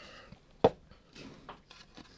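A heart-shaped painting board being spun by hand on a cup: one sharp tap about two-thirds of a second in, then a few fainter ticks.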